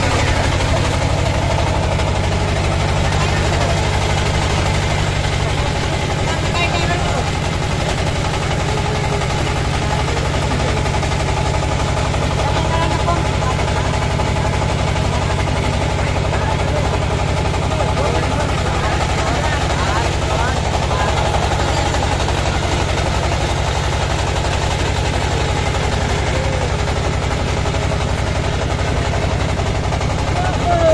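Engine of a wooden river boat running steadily under way, a constant low drone that holds unchanged throughout.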